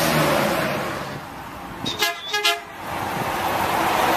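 Truck horn giving two short toots about half a second apart, a couple of seconds in, over a steady background rush of noise.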